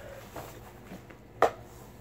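Quiet handling of a thick stack of paper as sheets are pulled off, with one short, sharp sound about a second and a half in.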